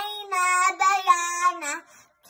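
A young girl reciting the Quran in a melodic chant (tajweed), holding long steady notes, with a short break just before the end.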